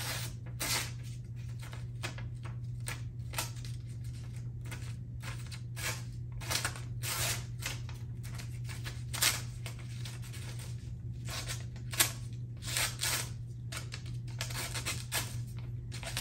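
Folding knife blade slicing into a sheet of paper, a long run of short crisp scraping and tearing strokes.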